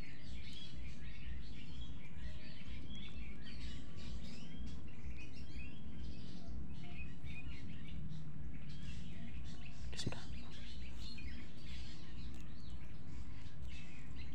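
Small birds chirping again and again in short calls over a steady low rumble, with one sharp click about ten seconds in.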